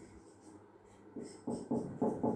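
Marker writing on a whiteboard: quiet for about a second, then a few short strokes in the second half.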